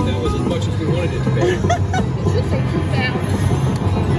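Eureka Reel Blast slot machine playing its bonus music and chirping sound effects, over the chatter of a casino crowd.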